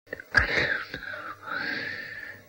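A drawn-out wailing voice at the start of a track on a punk album, starting suddenly out of silence and falling, then rising in pitch.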